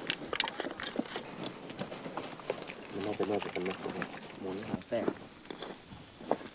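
Men talking at a distance, in words too unclear to make out, with scattered light knocks and clinks as metal munitions are handled and set down in rows.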